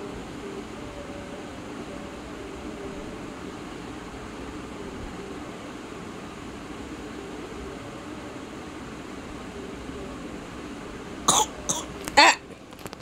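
Steady room background, then near the end two short, sharp sounds from a person's throat, in quick succession.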